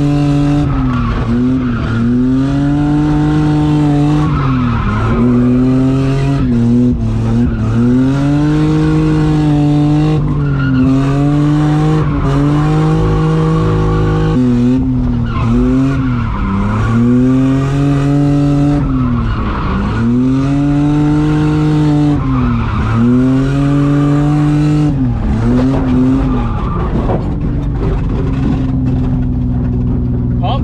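Nissan Skyline R33's straight-six engine heard from inside the cabin while drifting, revs climbing and dropping back over and over about every two seconds, with tyre squeal from the rear tyres sliding. Near the end the revs settle to a steady note.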